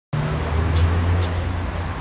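Road traffic: a steady low engine hum under an even haze of street noise.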